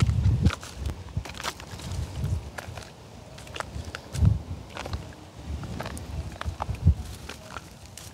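Footsteps crunching through dry rice stubble and straw, with irregular crackles of brittle stalks and a few low thuds.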